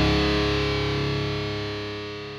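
Final chord of a metalcore song on distorted electric guitar, held and ringing out, fading away steadily.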